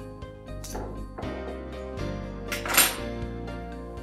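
Background music playing, with a loud clatter of metal serving utensils against ceramic dishware nearly three seconds in and a lighter clink under a second in.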